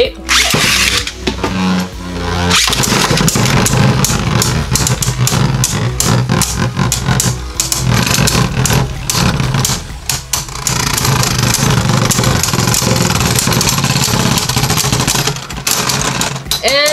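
Two Beyblade Burst Turbo spinning tops are launched into a plastic BeyStadium and spin against each other. They make a steady whirring scrape, with rapid clicking clashes from about two and a half seconds in, and the contact eases off near the end as one top wobbles out.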